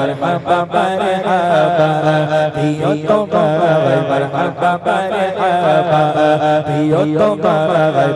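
A man singing a Bengali Islamic ghazal (gojol) into a microphone in a long, ornamented melodic line with vibrato, over a steady low drone.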